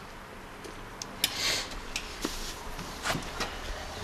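Handling noise at an electrolysis de-rusting tub: a few sharp knocks and clinks of the steel rod and clamps, with a brief slosh of the rusty washing-soda water a little over a second in, as the exhaust manifold is worked loose to be lifted out.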